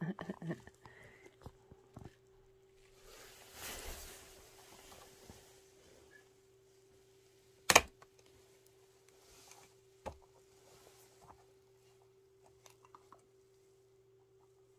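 A plastic fish cup is handled on a glass tabletop: soft rustling a few seconds in, then one sharp knock a little past halfway, the loudest sound, with a few faint ticks. A steady low electrical hum runs underneath.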